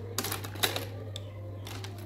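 A few light clicks and rattles of small makeup items being handled as a kajal pencil is picked up, bunched in the first second with a couple more later, over a steady low hum.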